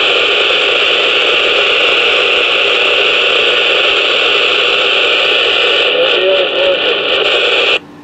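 A President McKinley CB radio on channel 19 receiving a reply to a radio check: loud, steady static hiss from its speaker with a faint, barely intelligible voice in it near the end. The hiss cuts off abruptly just before the end as the other station stops transmitting.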